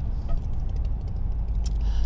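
Steady low rumble of a vehicle driving slowly on a gravel dirt road, heard from inside the cab.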